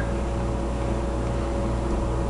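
Steady low background hum with a faint steady tone above it; nothing else happens.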